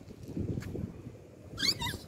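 A toddler's short, high-pitched wavering squeal near the end, over a low rumbling background.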